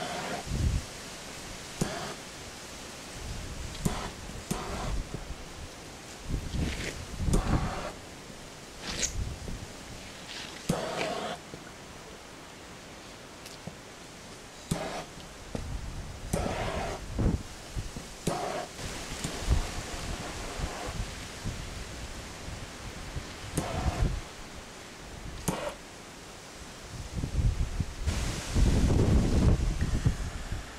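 Pond underlay fabric rustling and scuffing in irregular short bursts as it is handled and pressed into the hole, with wind buffeting the microphone, heaviest near the end.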